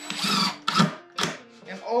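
DeWalt cordless impact driver driving a screw into a pilot-drilled hole in MDF, in short bursts, the longest near the start.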